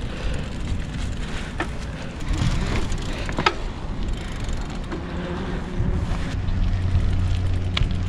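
Mountain bike being ridden from grass onto concrete: a low rumble of tyres and bike with a few sharp clicks and rattles from the frame and parts. A steady low hum comes in near the end.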